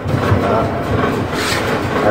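Rattling and scraping of plastic drain pipes and fittings being handled under a sink, a dense continuous clatter.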